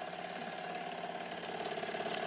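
A toy steam engine running steadily, driving the LEGO gears and conveyor of a model contraption: an even mechanical whir with fast, regular ticking.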